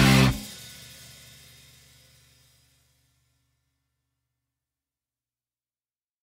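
A punk rock song ending: the full band stops on a final chord just after the start, and the chord rings out and fades away over about two seconds.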